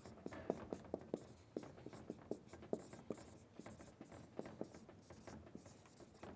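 Marker writing on a whiteboard: a faint, irregular run of short taps and scratches, a few each second, as the letters are stroked out.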